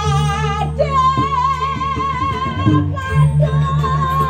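A voice singing long, wavering held notes through a microphone and loudspeakers, over steady low tones of the gamelan accompanying a Balinese dance drama.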